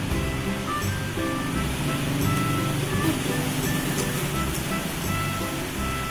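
Background music: a melody of short, high held notes over a steady low accompaniment.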